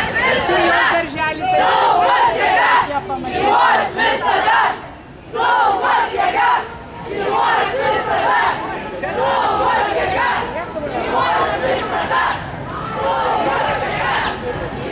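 Crowd of parade marchers shouting and cheering together, many voices overlapping loudly, with brief lulls about five and seven seconds in.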